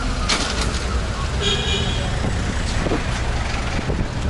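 Street traffic: motor vehicles driving past close by, over a steady low rumble, with a short high beep about a second and a half in.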